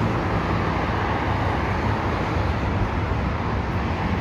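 Steady traffic noise from a busy multi-lane highway, cars and trucks passing continuously with a constant low rumble.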